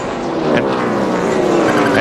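NASCAR Cup stock car's V8 engine, its note falling steadily in pitch as a car slows or passes after a crash.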